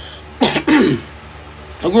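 A person clearing their throat once: a short rough burst about half a second in, trailing off into a gruff falling rasp.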